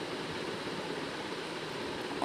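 Hot mustard oil sizzling steadily in a wok, frying tempered whole spices and a spoonful of freshly added turmeric.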